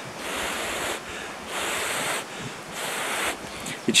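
A man blowing three short puffs of breath onto a smouldering ember in a cattail seed head, fanning the charred spot so that it glows red inside. Each blow is a breathy rush that lasts under a second.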